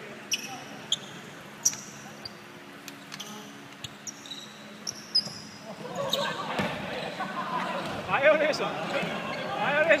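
A basketball bouncing a few times on a wooden gym floor, with short sneaker squeaks, ringing in a large hall. From about six seconds in, players' voices and shouts grow louder over the play.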